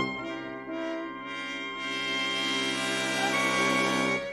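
Orchestral background music led by brass, playing held chords that change a few times.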